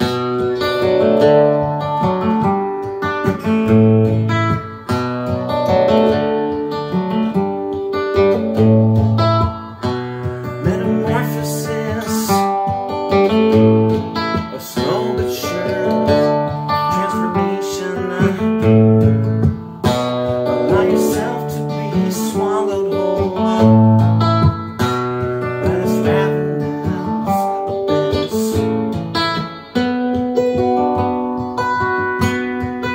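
Acoustic guitar with a capo, played in a repeating chord pattern of picked and strummed notes. A deep bass note returns about every five seconds.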